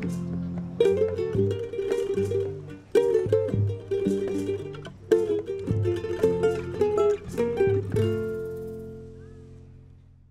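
Instrumental music played on plucked strings: a run of picked notes, ending on a final chord about eight seconds in that rings out and fades.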